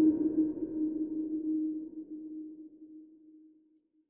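The closing note of an electronic intro jingle: a single low synthesizer tone held and fading away over about three and a half seconds.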